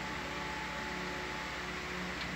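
Steady hum and hiss of equipment fans and ventilation in the ship's ROV control room, with a few faint steady tones running through it.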